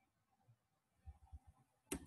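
Near silence with a few faint, soft taps of computer keyboard keys about a second in, and one short sharp click near the end.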